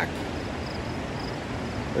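Steady outdoor background noise with a faint high insect chirp repeating about twice a second.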